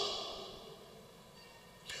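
A pause in amplified speech: the man's voice dies away in the hall's reverberation over about half a second, then near silence with a faint steady hum, until his next word begins at the very end.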